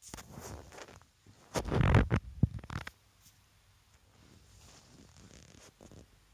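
Close rubbing and scraping handling noise: one burst in the first second, a louder, deeper rubbing from about one and a half to three seconds in, then a faint rustle.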